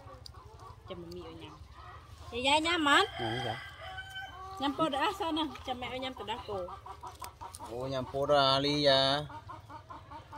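Domestic chickens clucking, with a rooster crowing loudly twice: about two seconds in and again about eight seconds in.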